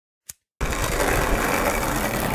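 Skateboard wheels rolling over rough asphalt: after a single short click, a steady rumble begins about half a second in.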